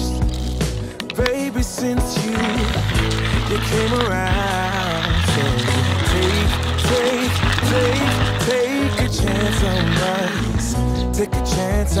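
Manual burr coffee grinder crushing beans as its crank is turned, a steady gritty rasp that starts a couple of seconds in and stops near the end, with background music.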